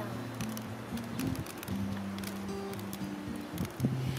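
Soft background music with long held low notes that change pitch in steps, and a few faint clicks.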